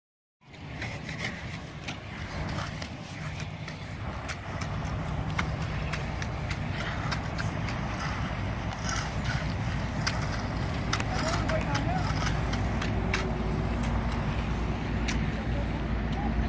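A vehicle engine running with a steady low rumble that grows louder over the second half, with indistinct voices and scattered light clicks over it.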